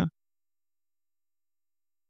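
Dead silence, with only the tail of a spoken word in the first instant.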